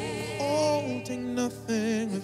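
Church choir singing a slow worship song, the voices held and wavering with vibrato over a steady low backing.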